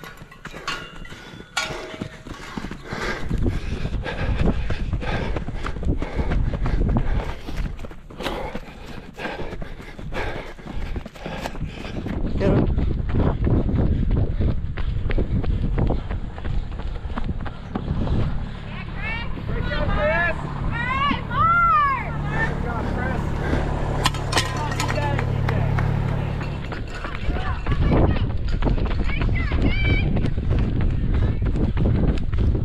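Running footsteps of racers on a dirt and grass trail, with a person's voice calling out in a few drawn-out, rising-and-falling shouts about two-thirds of the way in.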